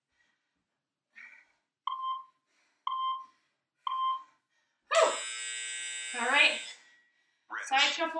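Workout interval timer counting down: three short beeps a second apart, then a long buzzer-like tone of about two seconds marking the end of the work interval.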